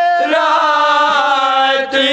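Men's voices chanting elegiac Urdu verse together without instruments. They hold long, steady notes, move to a new note shortly after the start, and break off briefly near the end.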